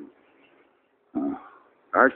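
A man's short wordless vocal sound, a brief grunt or throat noise, about a second in after a near-silent pause. Another short one starts right at the end.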